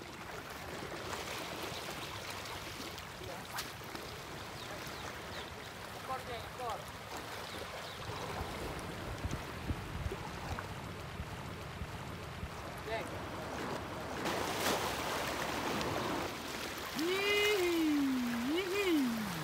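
Steady wash of shallow sea water lapping around the shore and a wading angler, with wind, growing a little louder about two-thirds of the way in. Near the end a person's voice calls out briefly with a rising and falling pitch.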